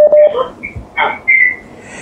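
A short, loud, steady beep at the start, then a few faint, brief snatches of sound that resemble voice fragments.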